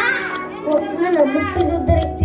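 A child's voice speaking into a microphone over backing music with a steady ticking beat and low thumps.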